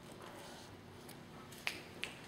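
Quiet room noise with one sharp click near the end.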